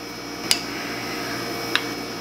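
Two sharp metallic clicks of a T-handle Allen key against a steel cap screw and the mill's cast-iron saddle, the first about half a second in and a lighter one near the end.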